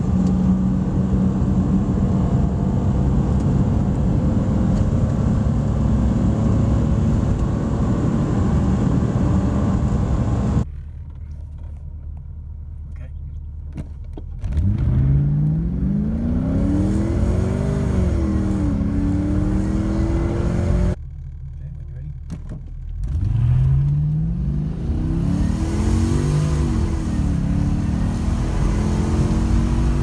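A Volvo 262C accelerating hard, heard from inside the cabin: first its original PRV V6 pulling in second gear with a slowly climbing note for about ten seconds. After a cut, the LS1 V8 conversion idles briefly, then makes two standing-start runs, each climbing fast in pitch, dipping at a gear change and climbing again.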